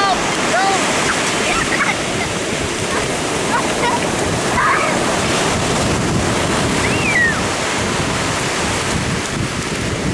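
Ocean surf breaking and washing up the beach, with wind buffeting the microphone. A few brief high-pitched cries from small children come through the surf, the clearest a rising-then-falling call about seven seconds in.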